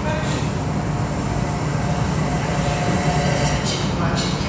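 Steady low rumbling room noise with no distinct strikes, and faint muffled voices.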